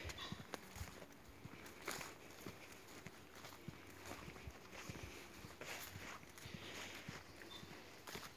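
Faint footsteps in boots on a dirt footpath at a steady walking pace.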